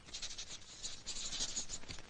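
A pen scratching across paper in quick, irregular strokes as a hand writes.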